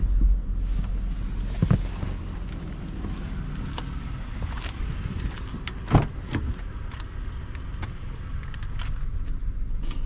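Car doors being handled on a 2021 Toyota Highlander: a knock about two seconds in, then a louder click and knock around six seconds as the rear door handle is pulled and the latch releases. A steady low rumble runs underneath.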